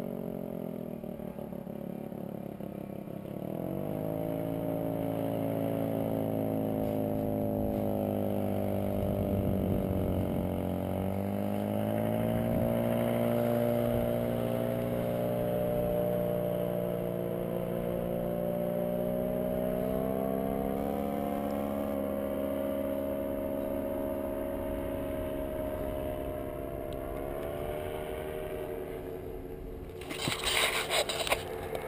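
Paramotor engine droning in flight, its pitch dipping and rising several times as the throttle is worked, with a step up in pitch about two-thirds of the way through.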